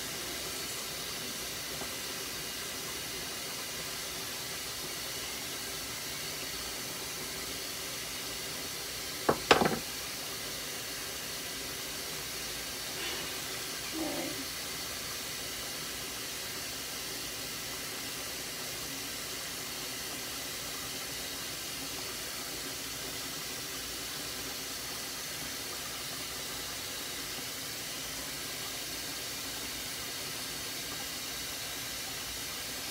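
Steady background hiss, with two sharp knocks close together about nine and a half seconds in and a softer, shorter sound a few seconds later.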